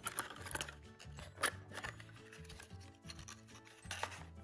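Die-cast toy car sliding into its cardboard box and the end flap being tucked shut: light scrapes and a few small clicks of card and metal, the sharpest about a second and a half in. Soft background music runs underneath.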